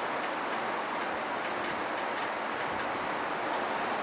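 Steady hiss of room noise with faint, irregular light ticks in it.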